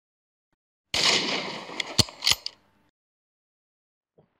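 A sudden loud rush of rustling and crashing noise about a second in, with a hunting rifle shot as its loudest crack about two seconds in and a second sharp crack just after.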